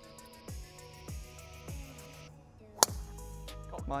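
Golf driver striking a ball off the tee: one sharp crack about three seconds in, over background music with a steady beat.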